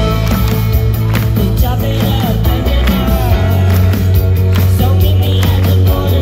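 Live band playing loud on a festival stage, heard from within the crowd: heavy bass, a steady drum beat, electric guitars and keyboard, with the singer's voice bending in and out at times.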